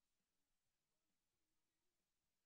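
Near silence: only a very faint room background.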